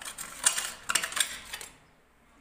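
A scrubber rubbed hard against a ceramic washbasin in several short, rough strokes, cleaning off stuck-on grime.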